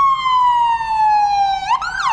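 Ambulance siren in a long, slowly falling wail, switching near the end to quicker up-and-down sweeps.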